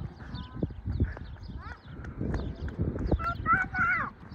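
Footsteps crunching along a dirt levee road while walking, with low rumble from wind on the microphone, as small birds chirp repeatedly in the background. A brief high-pitched voice comes in near the end.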